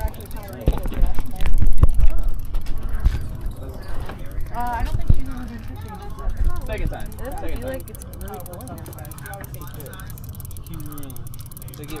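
Fishing reel being cranked slowly and steadily, its gears clicking, as a hooked lake trout is reeled in. There are loud low bumps and knocks in the first two seconds or so.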